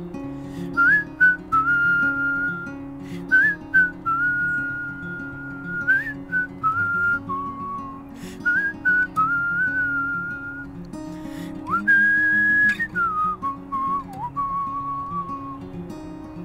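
A man whistling a melody over his own acoustic guitar chords, a whistled instrumental break in a folk song. The whistle holds long single notes with quick upward flicks between phrases, starting just under a second in and stopping shortly before the end.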